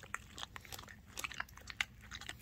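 Rottweiler/Shepherd mix dog licking peanut butter out of a small plastic cup: soft, irregular wet licks and tongue clicks.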